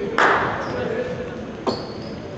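Echoing sounds of indoor basketball play: a sudden loud ringing hit about a quarter second in that dies away over about a second, then a short sharp squeak-like hit near the end.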